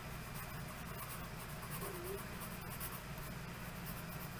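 Faint low hum of room noise with a few soft, scattered clicks and scratching sounds.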